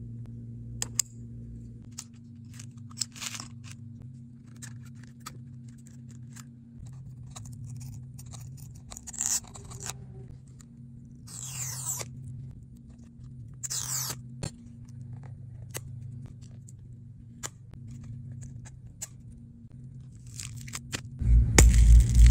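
Small clicks and a few short scrapes of smartphone parts being pried loose and handled with a pry tool, over a steady low hum; louder handling noise comes near the end.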